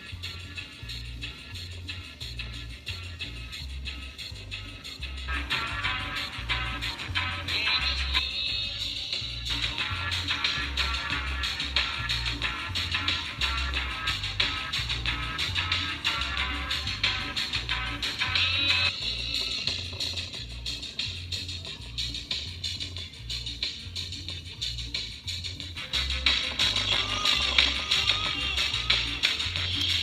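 Small, cheap 3-watt, 4-ohm speaker playing a pop song with a pulsing beat, driven hard to push the cone and blow the speaker out. The music changes section several times.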